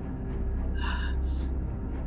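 A man's sharp gasp about a second in, a quick breath in and then out, over a low, ominous music drone.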